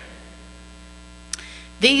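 Steady electrical mains hum in the microphone and sound-system feed, with a single small click just over a second in; a woman's voice starts speaking near the end.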